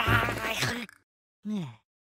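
Cartoon soundtrack: a buzzy, wavering tone over a low bass line that cuts off about a second in, followed by a short sound falling in pitch.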